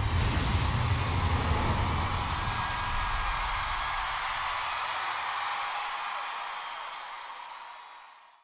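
End-card outro sound effect: a deep rumble with a hissing wash and a held tone that slowly fades away, dying out near the end.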